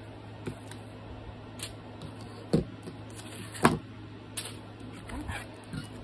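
Hardcover book cover being handled on a cutting mat: a few short knocks and taps, the loudest a little past halfway, over a steady low hum.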